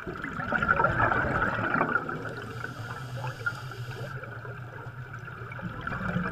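Air bubbles streaming and bubbling underwater: a steady noisy rush with fine crackle, a little louder in the first couple of seconds.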